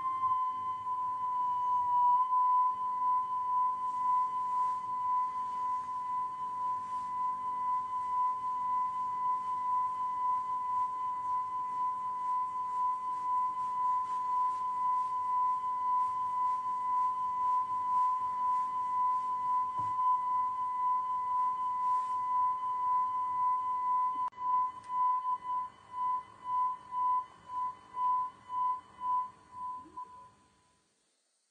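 Steady, unwavering test tone broadcast with a TV test card, heard off-air over faint hiss. Near the end it breaks into a run of short beeps, about two a second.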